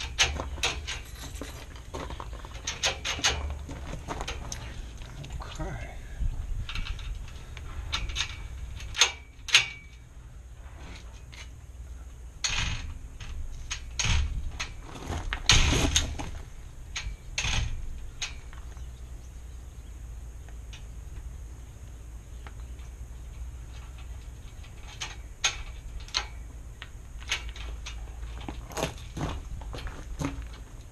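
Metal clicks and clacks from a mortise gate lock being worked: lever handle and key turned, latch and bolt snapping in and out, and the steel gate knocking against its frame. The clicks are scattered and come thickest in the middle, over a steady low hum.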